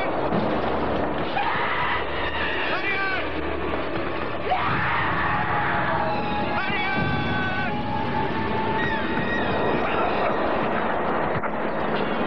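Dramatic background music with a person's cries and screams breaking in twice, over a steady rushing noise.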